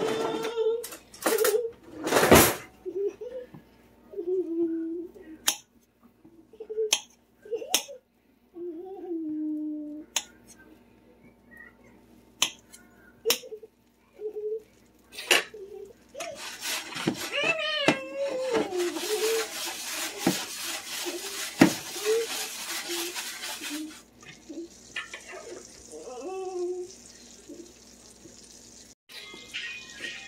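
Kitchen sounds while butter melts in oil in a frying pan: scattered clinks and taps of utensils and cookware, with faint background voices. About eighteen seconds in, a hiss rises for about five seconds, then a fainter steady hiss continues.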